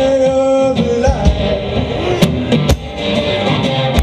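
One-man band playing live: guitar with a kick drum keeping the beat, and a long held, wavering melody note over them.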